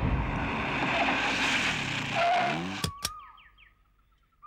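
A car drives in over a dirt driveway and brakes to a stop, with a brief squeal about two seconds in. Two sharp clicks follow near the three-second mark, and then it goes nearly quiet.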